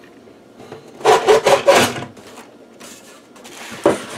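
The internal chassis and boards of an Agilent E4419B power meter being slid out of its outer case, scraping and rubbing in a few strokes about a second in. A fainter rub follows, then a short knock near the end.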